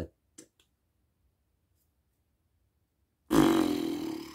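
A loud bodily noise with a low buzzing pitch breaks in near the end and lasts about a second. A faint click sounds shortly before it.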